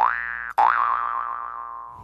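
Cartoon 'boing' sound effect: two quick rising twangs about half a second apart, the second ringing on and fading away.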